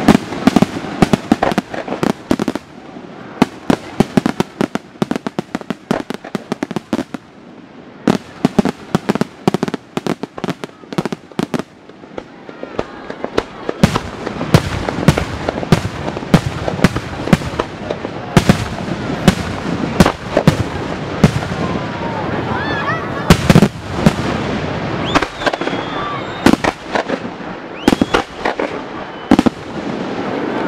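Aerial fireworks display: a rapid run of shell bursts and crackle. It is sparser in the first half, then builds from about halfway into a dense, louder barrage of bangs.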